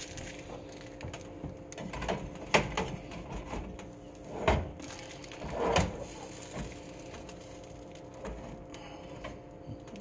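A few knocks and clatters of a black plastic slotted spatula handled against a nonstick frying pan, the loudest two a little past the middle, over a steady low hum.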